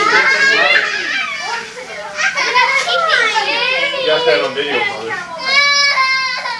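Several children's voices chattering and calling out over one another, high-pitched and overlapping, with a brief held high-pitched cry near the end.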